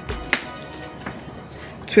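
A few light taps and handling sounds as a tape measure and cut fabric strips are handled on a cutting table, the sharpest tap about a third of a second in. Faint background music underneath.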